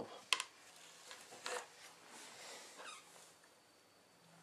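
Light handling of small hobby items: a sharp click about a third of a second in, then a few softer taps and rustles as a model lamp and paintbrush are handled.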